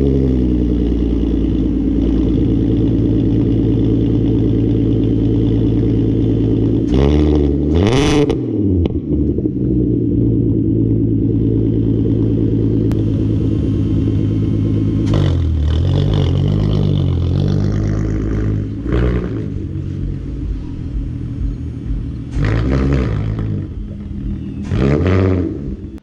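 Volkswagen Mk4 GTI VR6 engine idling, with one quick rev about seven seconds in and several shorter throttle blips in the second half.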